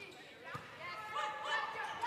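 Indoor volleyball rally sounds on a court in a large hall: shoes squeaking on the court surface and players calling out, with faint ball contacts. The sounds grow louder as the play builds toward the set at the net.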